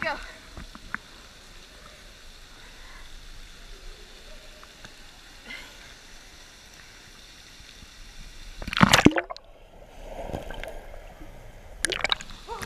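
A person jumping from a high ledge hits the water about nine seconds in with one loud, big splash. It is followed by a second or two of muffled water sound.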